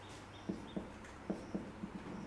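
Marker writing on a whiteboard: about five faint, short strokes and taps as letters are drawn, with a couple of brief high squeaks early on.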